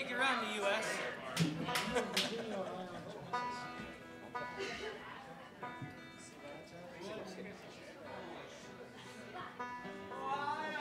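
Soft, scattered notes from the string band's instruments between songs, with a few held notes about three and a half and six seconds in, and quiet talking over the first couple of seconds.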